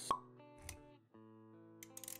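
Motion-graphics intro music with sound effects: a short pop just after the start, a low thud about two-thirds of a second in, then the music drops out for a moment and returns with a held chord and a few light clicks near the end.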